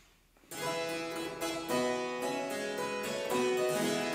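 Solo harpsichord starting about half a second in, playing a run of plucked chords and notes, each attack ringing on; it is the keyboard introduction before the soprano enters.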